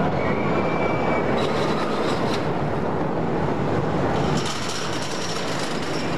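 Wooden roller coaster train running along its wooden track at speed, a loud continuous rumble and rattle, with a brief high-pitched squeal lasting about a second near the start.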